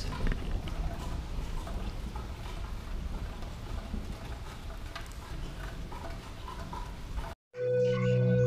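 Steady rain falling, an even hiss with a heavy low rumble. About seven and a half seconds in it cuts off, and intro music with long held tones begins.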